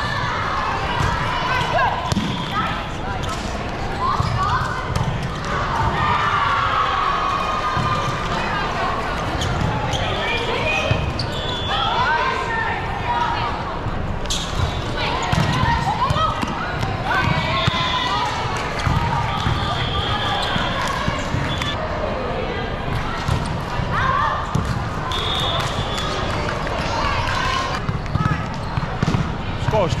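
Indoor volleyball play in a large echoing hall: the ball being struck and bouncing, amid continuous overlapping voices of players and onlookers. A few short, high steady tones sound now and then.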